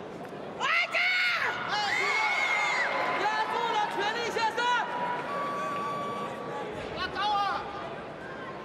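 Arena crowd with several spectators shouting high-pitched calls of encouragement, overlapping, in bursts about a second in and again near the end.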